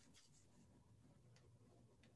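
Near silence, with a few faint swishes of a calligraphy brush stroking paper, the clearest about a second and a half in.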